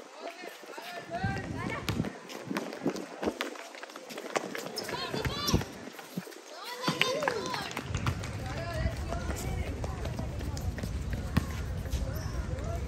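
Girls' voices calling out during basketball play, with running footsteps on the court and a few sharp knocks. A low rumble comes in about two-thirds of the way through.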